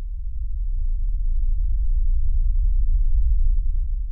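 Deep, loud low rumble, an outro sound effect for the closing title card, building over the first second or so and then holding steady.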